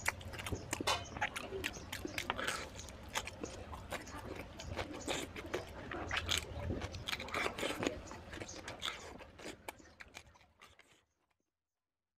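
Close-miked chewing and mouth sounds of someone eating mutton curry with rice: a dense run of wet smacks and clicks, fading out near the end.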